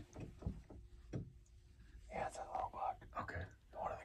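Hushed, whispered speech, mostly in the second half. It follows a few faint clicks and rustles in the first second or so.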